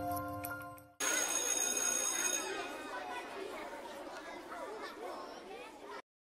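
A musical logo sting fades out. About a second in a murmur of many overlapping voices starts with a high ringing tone, then slowly fades away.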